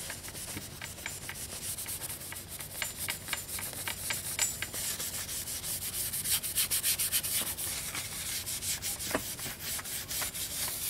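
Abrasive scuff pad rubbed quickly back and forth over a painted motorcycle fairing, a dry scratching with each short stroke, loudest a little past the middle. The scuffing dulls the paint so the clear coat will grip and not peel.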